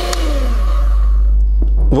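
Electric hand mixer whisking egg whites that have reached stiff peaks, its motor whirring and then falling in pitch as it winds down over the first second or so.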